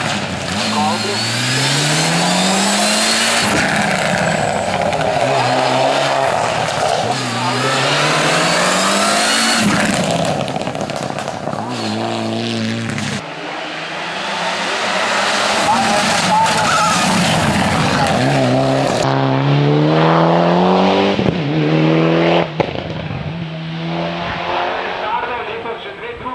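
Hillclimb race car engines accelerating hard, starting with a Mitsubishi Lancer Evo IX. The pitch climbs in repeated rising sweeps and drops back at each gear change.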